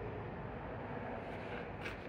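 Faint, steady background noise with no distinct event standing out.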